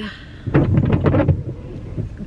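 A windshield wiper sweeping once across the windshield in the rain, heard from inside the car as a low swish lasting about a second.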